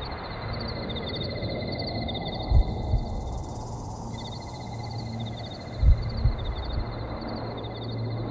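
Crickets chirping in steady, evenly pulsed trills over a low background rumble, with a few dull low thumps, two close together about two and a half seconds in and two more about six seconds in.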